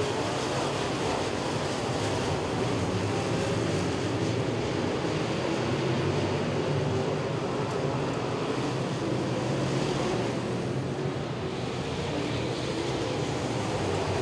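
Dirt-track open wheel modified race cars' engines running at speed as the field laps the oval, a steady blended sound with no single car standing out.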